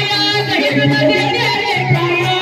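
A woman singing a Marathi gavlan folk song into a microphone, her voice held and bending in pitch, over a steady low drum beat.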